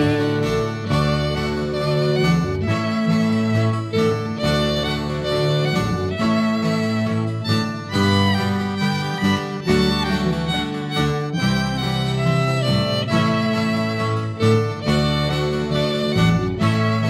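Instrumental rock passage led by fiddle over guitar, bass and drums, with no singing.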